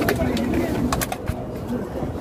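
Bird calls mixed with people's voices, with a few sharp clicks.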